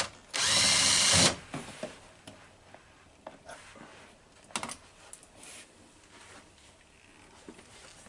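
Electric drill with a screwdriver bit running in one burst of about a second, backing out the Phillips screw at the inside door-handle trim of a Mercedes-Benz W116 door. A few light clicks of handling follow.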